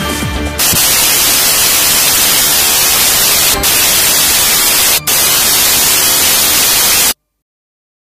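An electronic dance remix breaks off about half a second in and gives way to loud, steady static hiss. The hiss drops out for a moment twice, then cuts off abruptly into silence near the end.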